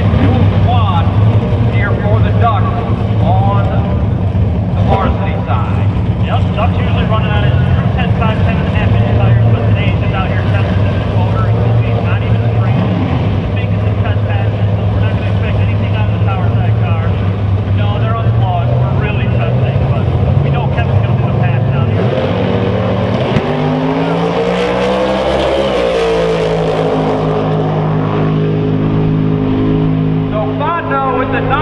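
Two Outlaw 10.5 drag cars' big V8 engines running at the starting line, then launching about 23 seconds in: the engine pitch climbs, then drops back as the cars run away down the track.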